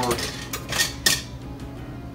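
Kitchen utensils clattering as a plastic spatula is picked up: a few sharp knocks, the loudest about a second in.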